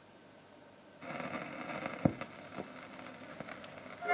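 Stylus set down on a spinning 78 rpm shellac record about a second in, then the lead-in groove's surface noise: steady hiss and crackle with a few sharp clicks, one loud click about two seconds in.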